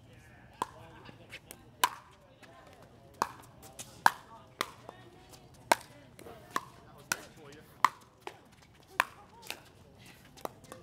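Pickleball paddles striking a hard plastic ball in a fast rally: sharp pops, about one to two a second, varying in loudness.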